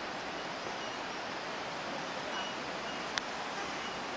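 River water rushing over rocks below, a steady, even hiss. A brief click about three seconds in.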